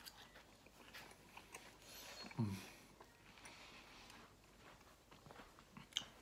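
A person chewing a mouthful of pork chop close to the microphone, with faint wet mouth sounds and small clicks. A short appreciative 'mm' comes about two and a half seconds in.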